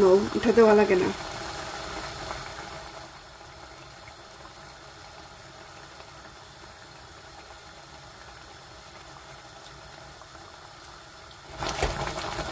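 A pot of tomato curry simmering with a faint, steady sound. Near the end a wooden spatula starts stirring and scraping the pot, which is louder.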